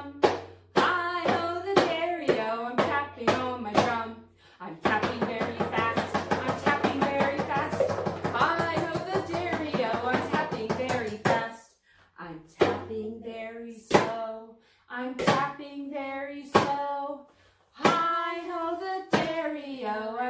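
Hand taps on a drum keeping time to a sung children's drumming song. A steady beat at first, then about six seconds of rapid tapping, then slow single taps a little over a second apart.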